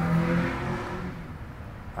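A man's drawn-out "ummm" hesitation hum that trails off about half a second in. It is followed by a pause with only a faint low background rumble.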